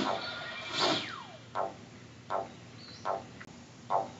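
Cartoon soundtrack from a television: a falling whistle, then soft, evenly spaced hits about every three quarters of a second, with a faint high chirp now and then.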